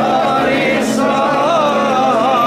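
Men chanting a Byzantine Orthodox hymn over a microphone, the sung melody wavering up and down, as the last of the church bells' ringing fades at the start.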